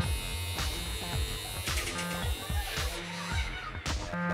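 Electric pet hair clippers buzzing steadily while trimming a dog's fur, over background music with a beat. The buzz stops just before the end.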